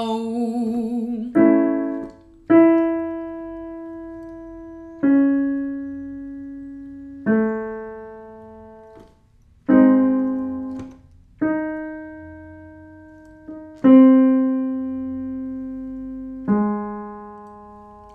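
A woman's held sung vowel ends about a second in. A piano then plays eight separate chords, each struck and left to ring down, at a new pitch each time, sounding the notes for the next repetition of a vocal warm-up exercise.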